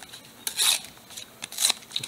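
A Pokémon trading card, an energy card, torn in half by hand: two short tearing bursts about a second apart.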